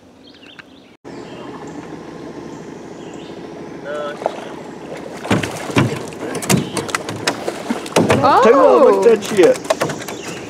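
A fish is hauled from the water on a fishing line and over the side of an aluminium jon boat, against a steady low hum. From about five seconds in come a run of sharp knocks and slaps as it swings against the metal hull. A man's voice calls out loudly near the end.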